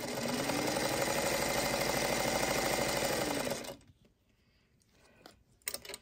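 Singer Featherweight sewing machine stitching a seam at speed for nearly four seconds, a fast even run of needle strokes. It speeds up at the start and winds down before stopping, followed by a few faint clicks.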